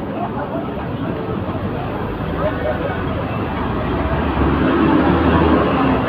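Busy city street ambience: passers-by talking over traffic noise, with a low vehicle rumble swelling in the second half.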